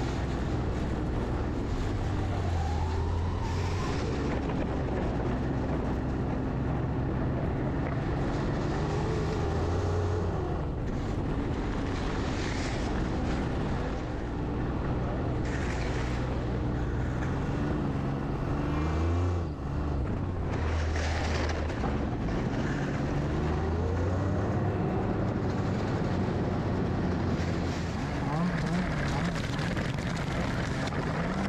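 A vehicle's engine running while driving over a snowy track, its pitch rising and falling with the throttle, over a steady rush of wind and road noise.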